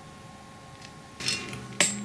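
Quiet workshop room tone with a faint steady hum. A brief soft hiss comes a little past a second in, and a single sharp click follows near the end.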